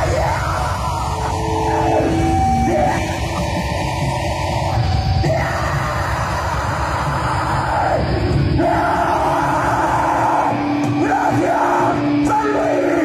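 Live black/death metal band playing loudly: harsh yelled vocals over heavy distorted guitars and drums.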